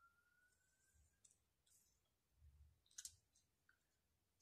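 Near silence, with faint handling of hair and a soft click about three seconds in as a hair clip is fastened on a gathered section of hair.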